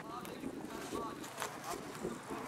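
Faint voices talking in the background over a light outdoor hiss, with no clear words.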